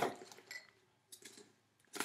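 A few faint clicks and taps of a small plastic container being picked up and handled, with a sharper click at the start.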